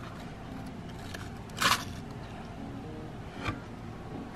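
Faint background music with a short scrape about halfway through and a lighter click near the end.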